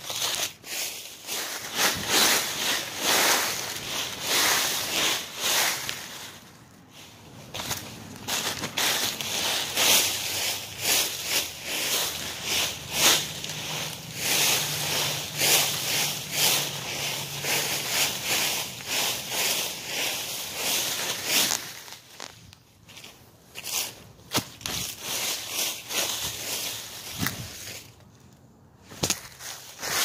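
Dry fallen leaves crackling and rustling as they are gathered and carried onto a leaf pile. A dense run of crunches, pausing briefly a few times.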